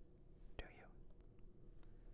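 Near silence: room tone, with one faint breathy vocal sound about half a second in.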